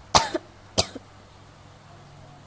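A woman coughing twice, two short loud coughs about half a second apart.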